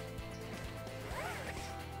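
Quiet background music under a faint rasp of tactical belt webbing being handled and pulled free as the belt is taken apart.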